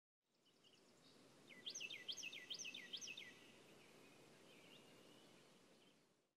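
Faint outdoor ambience with a bird chirping: a quick run of about six high sweeping notes a couple of seconds in, over a low steady background noise.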